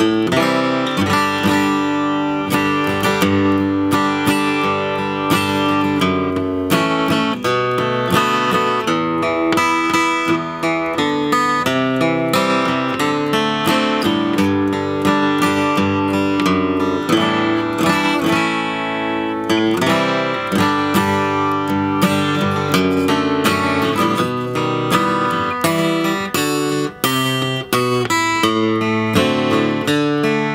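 1961 Epiphone FT-79N Texan flat-top acoustic guitar, with mahogany back and sides and a spruce top, strummed hard with a flat pick: a continuous run of ringing chords.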